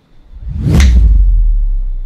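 Cinematic transition sound effect: a whoosh that swells and peaks just under a second in, over a deep low rumble that holds and fades out just after the end.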